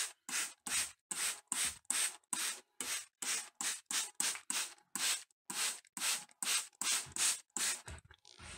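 Hand trigger spray bottle squirted over and over, about three short hissing sprays a second, wetting down the shredded-paper bedding of a worm bin.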